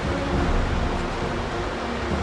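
Steady roar of fast-flowing river rapids, white water rushing over rocks.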